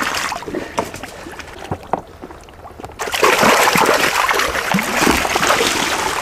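Shallow, muddy pond water splashing and sloshing as fish are grabbed by hand. Scattered small wet splashes at first, then about three seconds in a sudden, louder run of continuous splashing.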